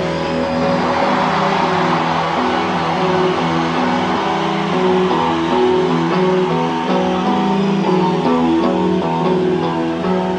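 Rock band playing an instrumental passage with no singing, led by guitars playing held notes and chords that change every half second or so.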